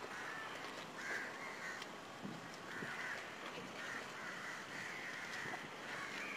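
Crows cawing repeatedly and faintly, a harsh call every second or so, over faint street background.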